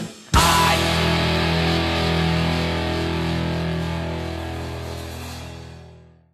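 Punk rock band ends the song: after a split-second break, one final chord is struck and left ringing. It fades out slowly over about six seconds.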